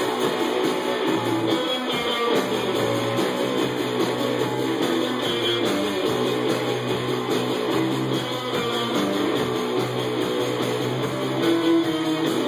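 Three-piece punk rock band playing live: strummed distorted electric guitar, bass guitar and drum kit driving through the instrumental opening of the song at a steady loud level, with no vocals yet.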